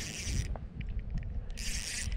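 Small spinning reel being cranked to reel in a hooked fish: its rotor and gears whir in two spells, one at the start and one from near the end, with a quieter gap between. A low handling rumble runs underneath.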